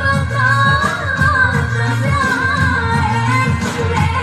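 A woman singing a dangdut song into a microphone over a live band, amplified through a PA. Her voice holds long, wavering, ornamented notes over a steady bass and drum beat.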